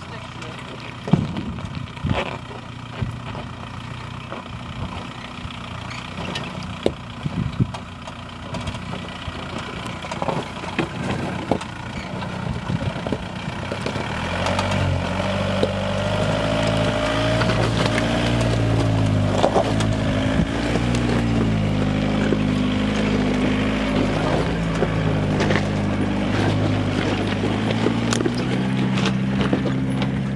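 Suzuki Samurai's 1.9 ALH TDI four-cylinder turbo-diesel crawling over rocks at low revs. It is faint at first, with sharp clicks of rock under the tyres, then grows much louder from about halfway as it comes close. Its note rises and falls with the throttle.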